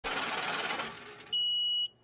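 Intro animation sound effects: a scratchy, hiss-like noise for under a second, then a steady high beep lasting about half a second.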